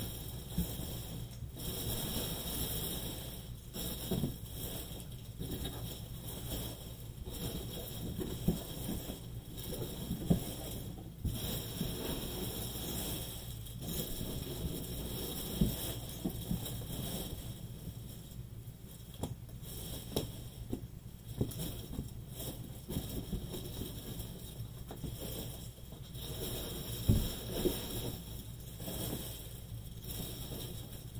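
Steady background hiss and hum with scattered faint knocks and clicks.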